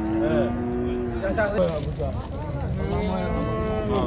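Calves mooing: about three long, drawn-out calls in a row.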